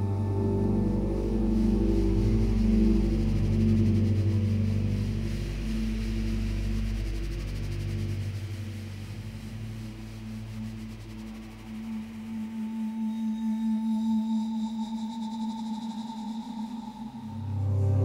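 Live synthesizer drone music: long held low tones that pulse slowly, the deepest dropping away about eight seconds in to leave a steady mid tone with a thin high tone above it, before the sound swells again near the end.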